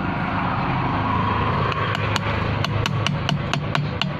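Light, quick hammer taps on a car starter motor's metal housing, starting about halfway through and coming several a second, over a steady background noise.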